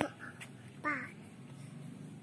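A single short call, falling in pitch, about a second in, over a faint steady hum.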